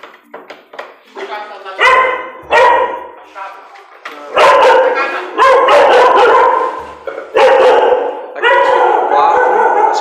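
Dog barking loudly and repeatedly, a run of drawn-out barks that grows louder and almost unbroken from about four seconds in.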